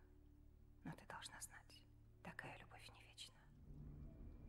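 Two short phrases of quiet, breathy speech, about a second in and again after two seconds, over a faint steady low hum.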